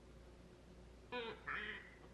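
A person's voice imitating a duck: two short quacks starting about a second in, the second one raspy.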